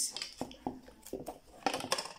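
A scattered series of light clicks and taps, busiest in the second half: small objects being picked up and set down on a wooden work table.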